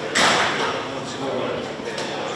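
A single sudden bang just after the start, fading out over about half a second, with voices in the background.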